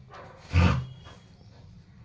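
An Indian pariah (desi) dog gives one short, loud vocalisation about half a second in.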